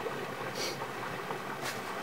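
Steady outdoor background noise, with two brief hissing swishes about half a second and a second and a half in.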